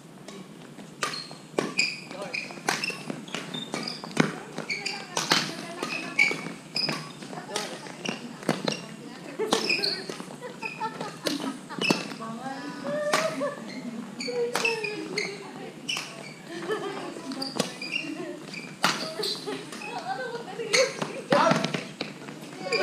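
Badminton rally: rackets striking the shuttlecock about once a second in a long exchange, with short shoe squeaks on the wooden court floor between the hits.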